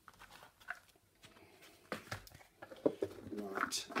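Light clicks, taps and knocks of craft supplies and a box being handled and set down on a work mat, busier in the second half.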